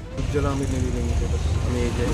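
Street traffic making a steady low rumble, with people's voices talking over it.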